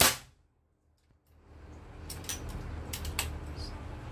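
A single sharp shot from a PCP bullpup air rifle right at the start, followed by about a second of dropout to near silence. A few light clicks follow, about two to three seconds in, from handling the rifle.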